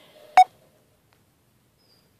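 A single short, sharp click carrying a brief tone, about half a second in.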